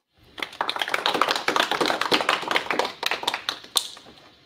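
Small audience applauding, many hands clapping quickly; it starts just after the beginning and thins out and fades near the end.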